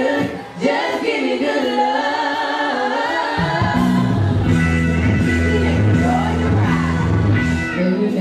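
An R&B song played live through a concert PA, a woman singing over the backing track. The bass drops out at the start and comes back in about three and a half seconds in.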